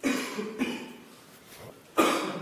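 A person close to the microphone coughing: a sharp cough at the start that fades over about a second, with a smaller one about half a second in.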